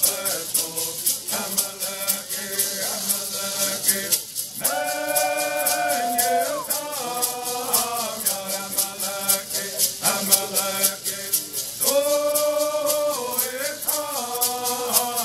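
Cahuilla bird songs: singing to a steady, even beat of shaken gourd rattles, with long held notes about five seconds in and again near the end.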